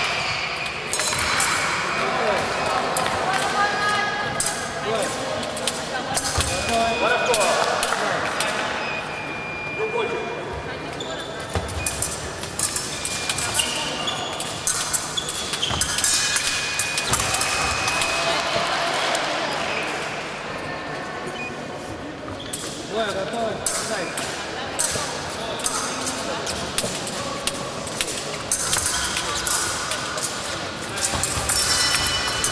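Fencers' footwork on a wooden sports-hall floor: repeated sharp foot stamps and thuds with short shoe squeaks, heard with reverberation in a large hall along with background voices.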